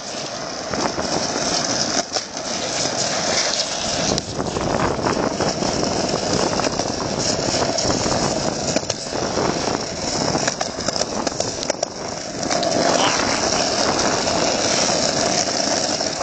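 Skateboard wheels rolling fast down a road hill: a loud, steady rolling noise with a few brief dips.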